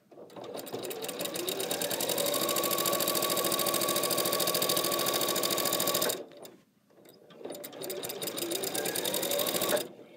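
Electric sewing machine stitching binding onto a quilt. It speeds up over the first two seconds and runs steadily with a rapid, even needle rhythm, stops about six seconds in, then starts again a second later and runs until just before the end.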